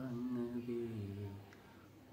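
A man singing unaccompanied, drawing out the end of a line as one held note that dips in pitch and fades away over the second half.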